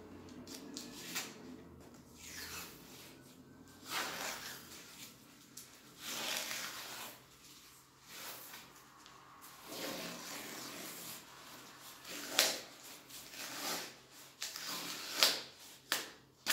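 Paper masking tape being pulled off its roll in several short, irregular pulls and wound around a cloth-covered bundle of rags, with the fabric rubbing under the hands.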